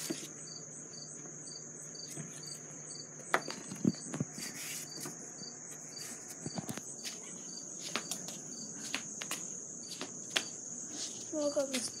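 A steady high-pitched insect trill with a soft pulse about three times a second, under scattered knocks and rustles from the phone being handled.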